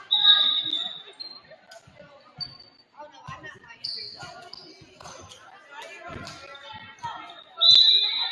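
A referee's whistle blows at the start of a volleyball rally, followed by several hits of the volleyball and short sneaker squeaks on the gym floor, with voices in the stands. Another loud whistle near the end stops the rally.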